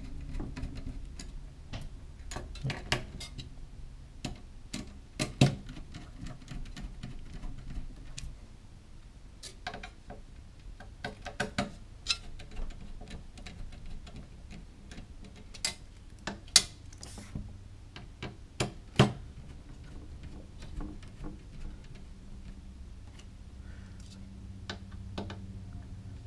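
Irregular small metallic clicks and ticks of a screwdriver turning the mounting screws of an Arctic i11 CPU cooler down a little at a time, over a faint low steady hum.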